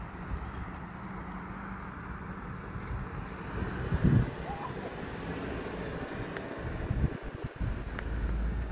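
Wind buffeting the phone's microphone outdoors: a steady low rumble, with a louder thump about four seconds in and a few more near the end.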